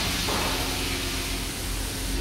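Steady hiss with a faint steady low hum underneath.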